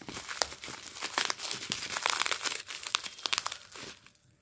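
Plastic bubble wrap crinkling and crackling as hands pull it off a small box: a dense, irregular run of sharp crackles.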